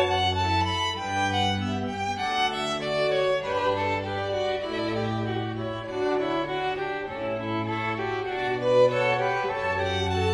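Background music on bowed strings: a violin melody over long, low sustained notes that change about once a second.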